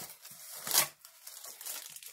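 Green packing paper rustling and crinkling as it is pulled out of an opened cardboard box, with a louder rustle a little under a second in.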